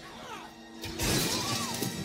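A lull in the music, then about a second in a burst of crashing, shattering noise sets in and carries on, with a faint tone sliding up and down within it.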